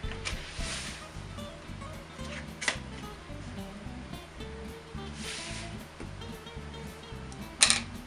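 Light background music, with the soft rubbing of a plastic dough scraper working a proofed dough ball off a metal tray. A sharp knock near the end is the loudest sound.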